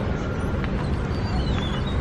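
Steady low rumble of a car moving at a crawl, heard from inside the cabin, with a few faint thin high tones above it.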